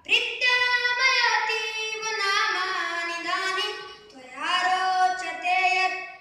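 A boy singing solo and unaccompanied, a Sanskrit version of a Bollywood song, in long held, wavering notes with a short breath pause about four seconds in.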